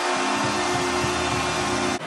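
Arena goal horn sounding as one steady, held chord over a cheering crowd after a home goal; both cut off sharply at the end.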